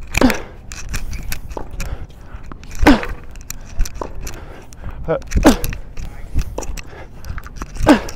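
Tennis balls struck by rackets in a groundstroke rally on a hard court: four sharp hits about two and a half seconds apart, with softer ball bounces and footsteps between them.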